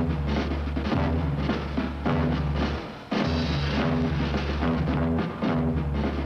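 Dramatic film-score music with heavy low held notes and drums. It drops out briefly about three seconds in, then comes back just as strong.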